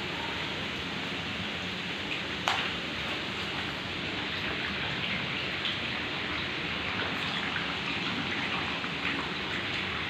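Water running and dripping over wet rock: a steady wash of noise with many small splashes, more of them in the second half. A single sharp click about two and a half seconds in.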